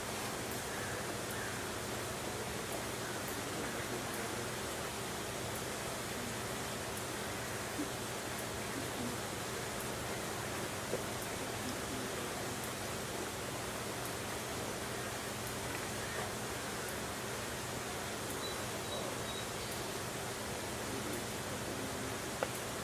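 Steady outdoor background hiss with a few faint ticks.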